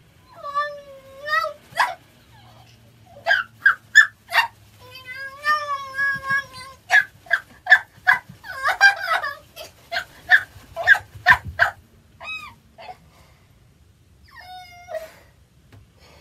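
A ticklish woman squealing and yelping as the sole of her foot is tickled. There are a few long, high held squeals and quick runs of short, sharp yelps, the densest in the middle.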